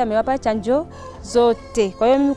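Chickens clucking and calling in short pitched bursts.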